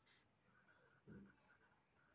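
Near silence with faint pencil scratching on paper as a word is written in a textbook.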